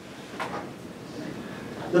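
Low room noise with a brief rustle about half a second in; a man starts speaking at the very end.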